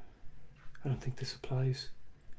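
A man's voice muttering a few words under his breath, quiet and indistinct, starting about a second in.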